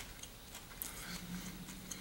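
Faint, irregular crunching clicks of a raw green almond being chewed with the mouth closed. A soft closed-mouth hum comes in about halfway through.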